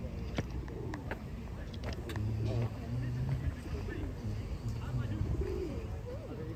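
Pigeons cooing, with the clicks of footsteps on a stone path and a low background hum.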